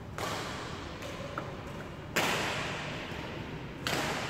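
Three sharp badminton racket hits on shuttlecocks, just under two seconds apart, each echoing in a large hall; the middle hit is the loudest.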